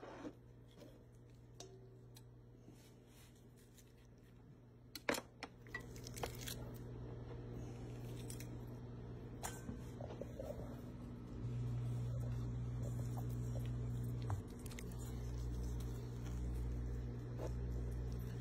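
Kitchen knife cutting raw rabbit meat off the carcass, with quiet slicing and handling sounds and a few sharp clicks about five seconds in. A low steady hum runs underneath and grows louder about halfway through.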